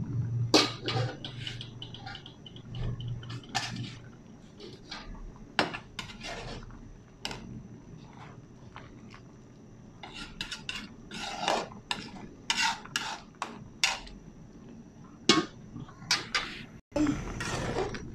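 Metal ladle stirring soup in an aluminium pan, with irregular clinks, knocks and scrapes against the pan's side and bottom.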